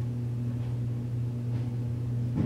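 Steady, low electrical hum with a buzzy edge, unchanging throughout.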